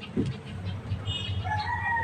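A rooster crowing: one long held call that starts about one and a half seconds in. A short, higher bird call comes just before it, and a low steady rumble runs underneath.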